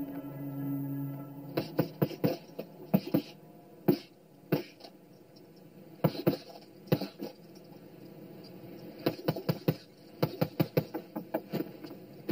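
A low sustained drone that stops about a second in, then a long run of sharp, short knocks and clicks coming in irregular clusters.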